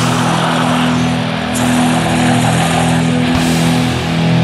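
Slow blackened drone doom metal: a heavily distorted electric guitar holds a sustained low chord that drones steadily, under a dense wash of noise.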